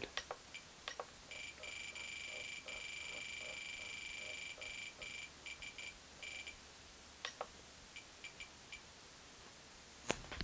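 Spektrum DX8 radio transmitter beeping as its scroll roller is turned to step a mix rate up to 100%. A high beep tone starts about a second in and carries on, broken by short gaps, until past the middle. A few light clicks come before and after it.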